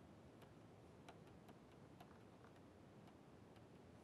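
Near silence with faint, irregular ticks, about two a second: a stylus tapping on a pen tablet while writing.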